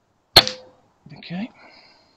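A single shot from a .177 air rifle firing an H&N Baracuda 8 pellet: one sharp crack with a short ringing tail. About a second later comes a brief, quieter low voice-like sound.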